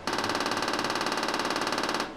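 BrainsWay deep TMS (transcranial magnetic stimulation) helmet coil clicking in a rapid pulse train as it fires magnetic pulses into the head. The clicks come at about twenty a second, start abruptly and stop after about two seconds.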